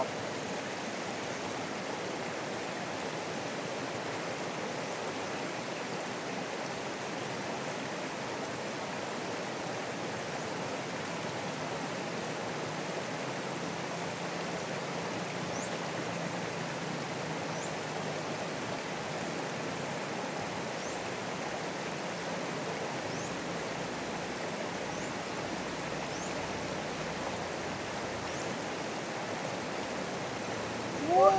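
Shallow rocky river rushing steadily over stones and small rapids.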